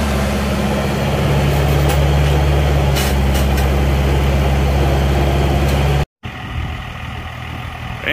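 Diesel engine running at a steady speed, with a few light clunks about three seconds in. The sound cuts out abruptly at about six seconds, and a quieter engine idle follows.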